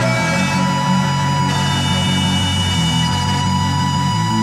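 Electronic metal instrumental with distorted guitars over a steady heavy low end, no vocals.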